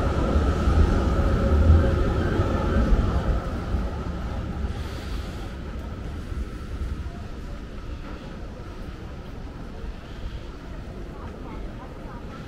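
A tram passing close by, its low rumble and a steady whine fading away over the first few seconds as it moves off, leaving quieter street background.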